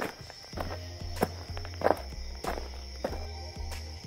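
Footstep sound effects at a steady walking pace, about seven steps evenly spaced a little over half a second apart, over background music.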